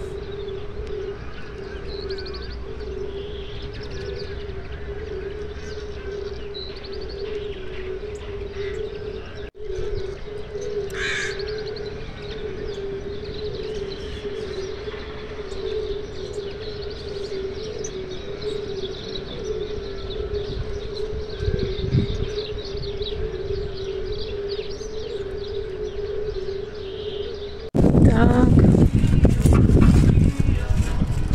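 Birds calling outdoors, with short high chirps and a call about eleven seconds in, over a steady low hum. Near the end the sound cuts suddenly to much louder noise.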